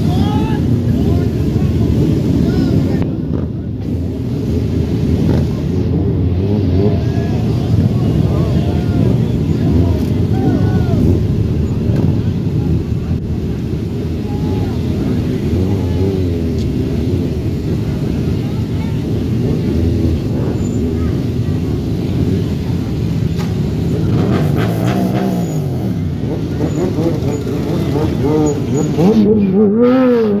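Sport motorcycle engines running and revving as riders hold wheelies, with a crowd talking over them. The engine pitch rises and falls several times, most strongly near the end.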